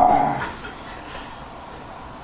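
A drawn-out whimpering cry from a person that fades out about half a second in, followed by low room noise.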